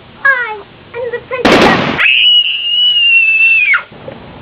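A young girl's voice: a short falling exclamation, a loud harsh burst about a second and a half in, then a shrill, high-pitched scream held for nearly two seconds that drops away at the end.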